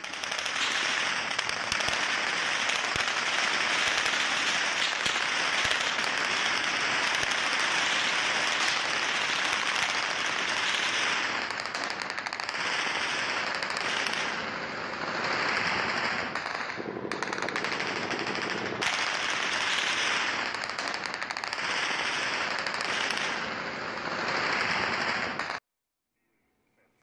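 Sustained automatic gunfire from many weapons at once, the shots overlapping into a nonstop clatter: a heavy exchange of fire in a tribal armed clash. It cuts off suddenly near the end.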